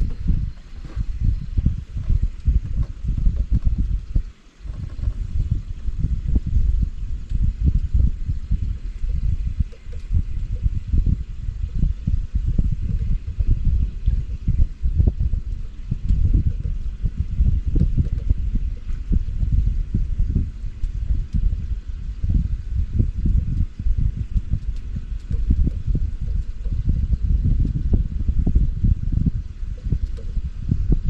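Wind buffeting the camera microphone on a moving boat: a loud, gusty low rumble that rises and falls unevenly, briefly dropping away about four seconds in.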